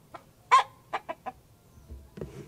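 Hen clucking around laying an egg: one loud call about half a second in, then three short clucks. This is the excited egg-laying clucking that hens make when a new egg is coming.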